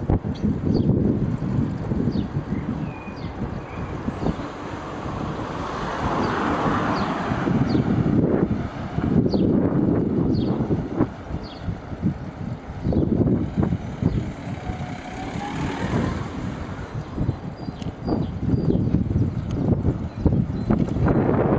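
Wind buffeting the microphone of a camera riding along on a moving bicycle, a low uneven rumble that swells and dips. Short high chirps come and go faintly above it.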